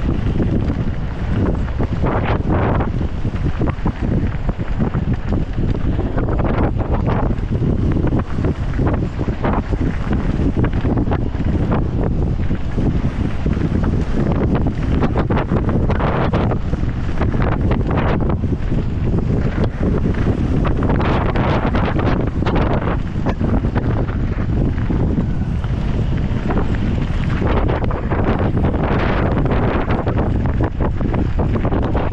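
Wind buffeting the microphone of a camera riding on a mountain bike at speed down a loose gravel trail, over the tyres crunching on gravel and the bike rattling over stones.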